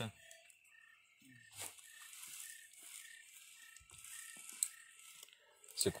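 Faint scraping and light ticking of a screwdriver working at wood inside a hollow in a tree trunk. Under it, a faint high chirp repeats about twice a second.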